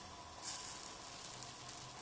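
Faint sizzle of cream heating in a saucepan just short of the boil, with small bubbles forming around the edges of the pan: the sign that the cream is ready.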